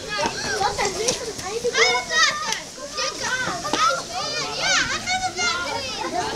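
Many children's voices chattering and calling out over one another, high-pitched and excited.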